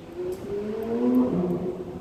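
A car engine passing close by, its note rising and growing louder to a peak about a second in, then dropping lower as it goes past.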